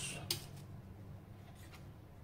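Faint handling of butcher's twine and a raw stuffed chicken roll on a plastic cutting board, over a low steady hum, just after a spoken word ends.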